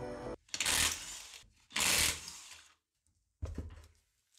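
Power impact wrench spinning out the wheel bolts in two short rattling bursts, with a shorter burst near the end as the front wheel comes free.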